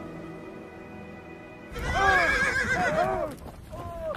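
Quiet steady music, then, not quite two seconds in, horses whinnying loudly: several rising-and-falling neighs in quick succession, with another call just before the end.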